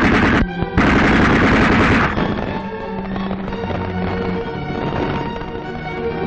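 Machine-gun fire in two rapid bursts, the second about a second long and ending about two seconds in, over orchestral music that then carries on alone.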